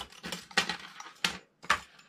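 Thin steel lock picks clicking and clinking against each other and the bench as they are handled and put into a pick case: a handful of light, separate clicks.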